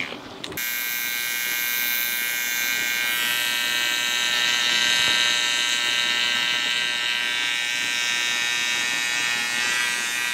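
Cordless T-blade hair trimmer buzzing steadily as it details the taper around the ear and sideburn. It starts up about half a second in after a brief lull.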